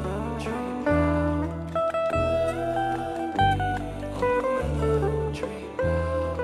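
Electric guitar solo on a sunburst single-cut solid-body guitar: a melodic lead line with string bends, over a low backing that moves to a new note about every second and a quarter.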